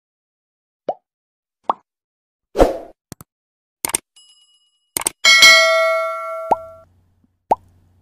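Animation sound effects: a string of short plops, a louder hit a little after two and a half seconds, a few quick clicks, then a bright bell-like ding around five seconds in that rings for about a second and a half. Two more short plops follow near the end.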